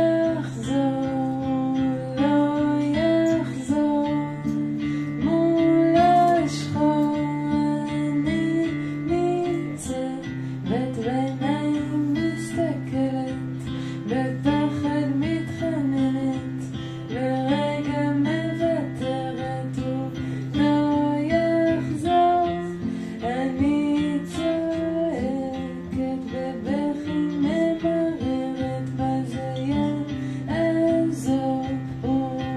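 A solo singer with an acoustic guitar, performing a song live: the voice carries the melody over a steady plucked and strummed guitar accompaniment.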